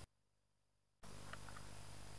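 About a second of dead silence that cuts off suddenly, then faint steady outdoor background hum and hiss with a few brief high chirps about a second and a half in.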